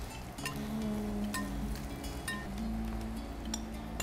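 Several sharp clinks of a metal spoon against a glass bowl as a pasta salad is stirred, over steady background music.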